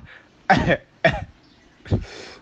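Three short, sudden bursts from a man's voice, roughly two-thirds of a second apart, between stretches of talk.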